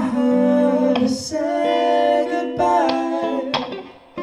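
A male singer holding sustained sung notes over a live rock band with electric guitar and drums, a few drum hits marking the beat. The music thins out briefly just before the end.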